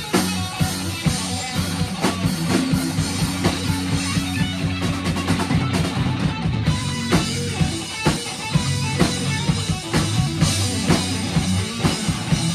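Live rock band playing: electric guitar and drum kit, the drums keeping a steady beat over sustained low notes.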